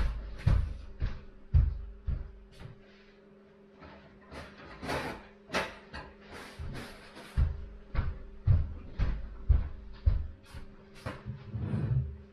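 Irregular knocks, clicks and clatter of household objects being handled and set down, as with cupboard doors, with a stretch of rustling around the middle. A steady low hum runs underneath.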